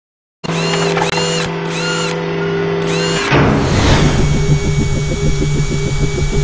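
Produced logo-intro sound: a steady machine-like whir with a swooping chirp repeating about twice a second, then a whoosh just after three seconds and a fast, even pulsing beat.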